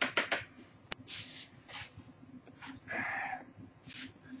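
Plastic mixing cups being handled: a few light clicks and taps, a sharper click about a second in, then a brief squeak of plastic rubbing on plastic about three seconds in.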